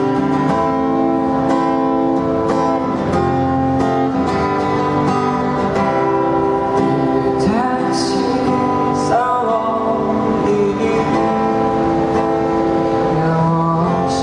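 Acoustic guitar strummed in a steady rhythm, with a man's voice starting to sing over it about halfway through.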